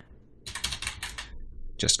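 Computer keyboard typing: a short run of quick keystrokes lasting about a second as a short name is typed in.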